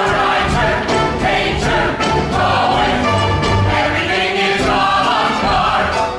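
Stage-musical cast singing together in chorus over a pit orchestra, performing a show tune.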